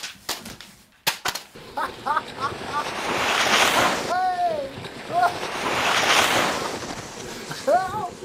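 Rushing-air whooshes of a sledge speeding down a snowy slope, swelling and fading twice, with a man's short excited whoops and one falling yell over them. A couple of sharp knocks near the start.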